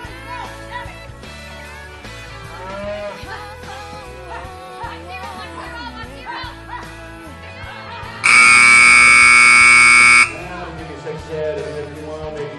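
Background music with a vocal line; about eight seconds in, a loud electronic arena buzzer sounds as one steady tone for about two seconds and cuts off suddenly.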